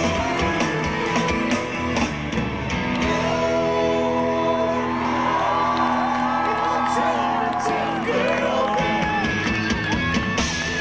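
Live rock band playing, led by electric guitar strumming. From about three seconds in the band holds a long sustained chord with singing over it, and the guitar strumming starts again near the end.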